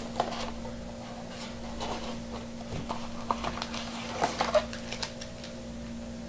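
Cardboard hobby box being opened by hand and its foil-wrapped trading card packs handled: scattered light taps and clicks, busiest a little past four seconds in, over a steady low hum.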